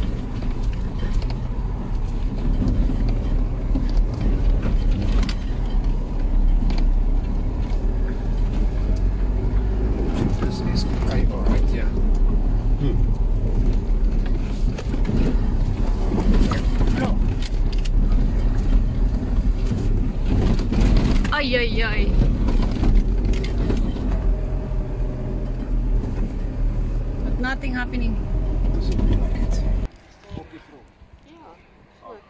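Car driving slowly up a rough, stony dirt track, heard from inside the cabin: a steady low engine and tyre rumble with scattered knocks from the bumps.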